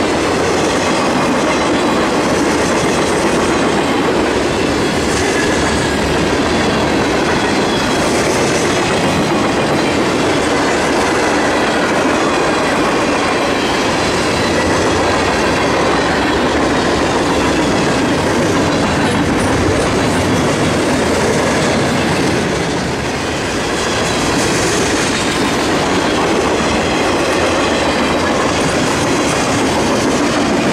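Freight cars of a passing train rolling by close: a steady, loud noise of steel wheels on the rails.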